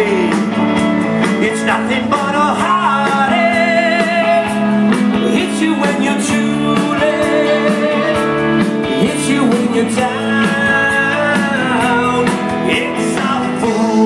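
Live rock and roll band playing: electric guitar over a steady drum beat, with a singer's "yeah, yeah" about ten seconds in.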